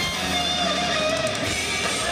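Live hard rock band playing, led by an electric guitar holding wavering, bent notes over bass and drums.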